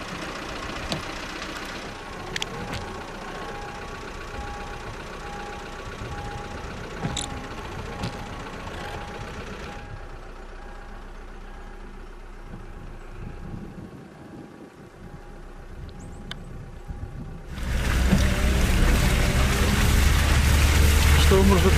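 Car engine running, heard from inside the car, with a repeated electronic beep about twice a second from about three to ten seconds in. Near the end the engine and road noise get suddenly much louder as the car drives off.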